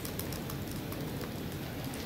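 Steady, fairly quiet background hiss with a few faint scattered ticks.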